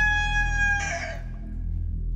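A recorded rooster crow, its long held final note ending just under a second in, over a steady low background drone. It is played as the daybreak cue.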